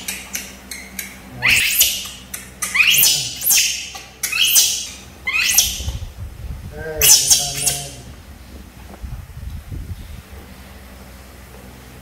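Baby macaques giving a series of high-pitched squeals, each falling in pitch, over the first eight seconds, the last one the loudest; after that the calls stop.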